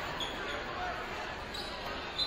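A basketball bouncing on a hardwood gym floor amid crowd chatter, with a few short high squeaks.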